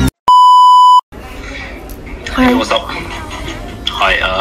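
A single loud, steady high-pitched beep, under a second long, of the kind dubbed over video as a censor bleep, coming just as music cuts off; then a person's voice talking.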